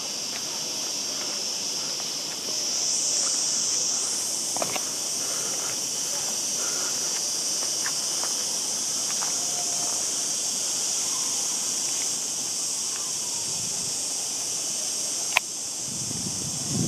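Insect chorus: a steady, high-pitched hiss that swells slightly a few seconds in. A single sharp click comes near the end.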